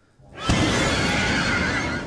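A horror film's jump-scare sound: a sudden, very loud burst about half a second in, a high wavering screech over a dense, harsh layer, dropping sharply at the end.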